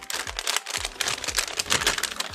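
Small plastic bags crinkling and crackling in a quick, irregular patter as they are handled and opened.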